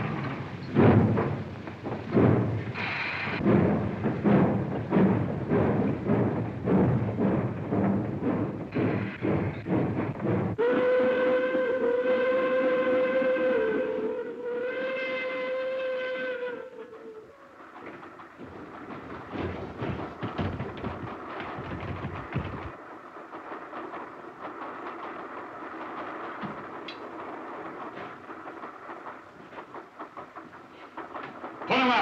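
Steam locomotive chuffing in a steady rhythm. About ten seconds in, its steam whistle gives two long blasts, then the train sound drops to a quieter, uneven rumble with scattered clanks.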